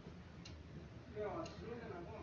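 Quiet pause in a woman's spoken talk: low room tone with a soft tick about once a second, and a faint murmur of voice in the second half.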